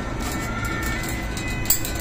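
Steady low mechanical rumble of a Ferris wheel turning, heard from inside its enclosed gondola as it descends, with a few light clicks. Faint music plays in the background.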